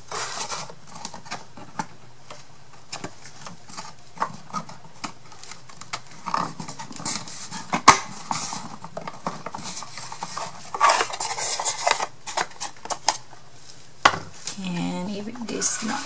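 Thin unfinished wooden craft pieces handled and fitted together by hand: scattered light clicks and knocks of wood on wood and on the table, with brief scraping as parts slide against each other, the sharpest knock about halfway through. A voice starts near the end.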